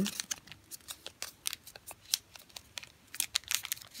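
Origami paper being folded and creased between the fingers: an irregular run of short crinkles and crackles.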